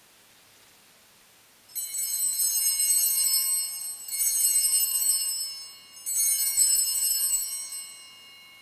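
Altar bells (a cluster of small sanctus bells) shaken three times, each a bright jingling ring about two seconds long, the last ring fading out near the end. They are rung at the elevation of the consecrated host.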